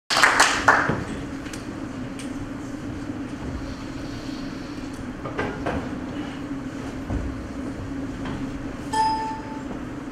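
Steady low hum from a microphone and PA system, with loud handling knocks in the first second as the microphone is passed to the presenter. A few soft clicks follow midway, and a brief ringing tone sounds about nine seconds in.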